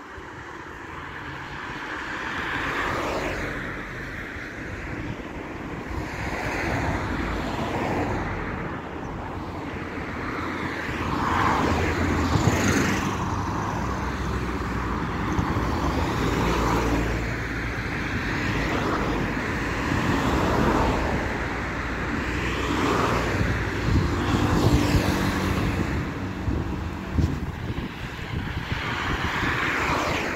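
Street traffic: cars passing by one after another, the sound swelling and fading with each pass.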